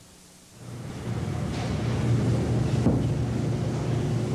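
Bakery workroom background noise: a steady low machine hum and rumble fades in about half a second in and holds, with one short knock near three seconds.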